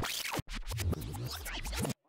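Fast-forward transition sound effect: a scratchy, sped-up whirr. It opens with a short burst, breaks off briefly about half a second in, then runs on and cuts off suddenly just before the end.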